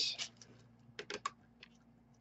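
Three quick, light clicks about a second in, with a fainter one just after: a hard plastic graded-card slab being handled and set down on the table.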